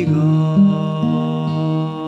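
A man singing slow, held notes, accompanied by an acoustic guitar.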